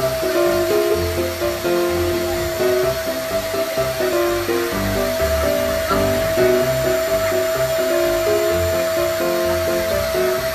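Background music with a melody and a bass beat, over the steady whine and airy rush of a canister vacuum cleaner running.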